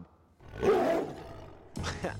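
A single lion-like roar that swells quickly and trails off over about a second. Music comes in near the end.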